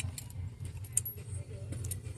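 Ceramic mugs clinking against each other as a stacked snowman mug set is picked up and handled: a few short sharp clinks, the loudest about a second in, over a steady low hum.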